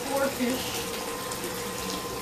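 Steady running water in a fish pond, with a faint steady tone underneath.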